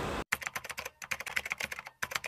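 Computer keyboard typing: a quick run of key clicks, about ten a second, with a brief pause about a second in.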